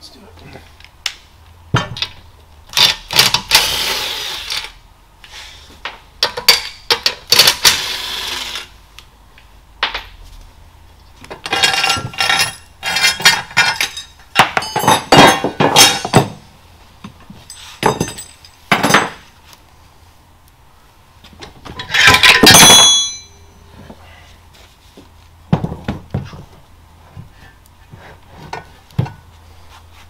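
Metal clanks, knocks and clinks as the crankcase of a Lycoming O-360 aircraft engine is handled and its halves are separated, with tools and parts set down on the workbench. Some strikes ring brightly. The loudest is a longer clatter lasting about a second, about 22 seconds in.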